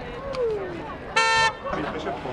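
A single short honk of a fire engine's horn, about a third of a second long, over voices and crowd chatter.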